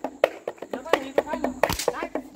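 A thick rope whip lashed once with a loud crack near the end, over a run of quick, sharp clicks and taps.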